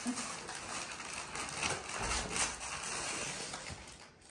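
Gift-wrapping paper being torn and rustled off a box, in a run of crackling, papery bursts that are loudest about two seconds in.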